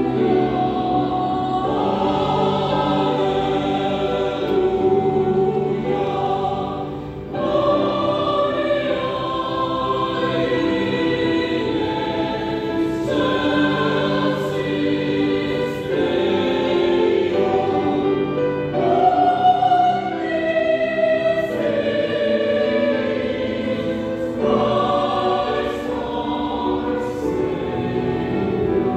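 Mixed chancel choir singing a sacred Christmas cantata piece in sustained, held phrases, with a short breath between phrases about seven seconds in.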